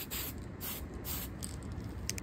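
Aerosol spray can of flat black lacquer paint hissing in a few short bursts, the last ones fainter, as a coat is sprayed onto RC wheels.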